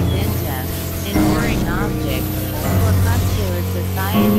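Experimental synthesizer music: layered steady low drones with warbling, gliding higher tones over them. The low drone shifts to new pitches about a second in and again near three seconds in.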